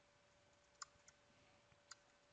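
Near silence with a few faint computer keyboard keystrokes, about four sparse clicks, as a word is typed. A faint steady hum runs underneath.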